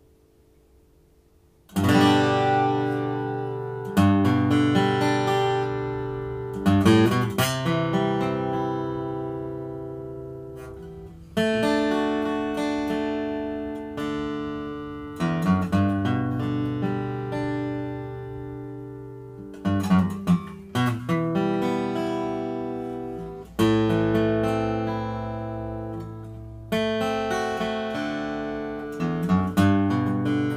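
Collings DS-1 12-fret dreadnought acoustic guitar, with mahogany back and sides and a Sitka spruce top, played with a pick. About a dozen first-position chords are strummed, each left to ring and fade away, starting about two seconds in.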